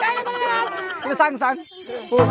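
Boys' voices calling out in a sing-song chant, then a short hiss near the end.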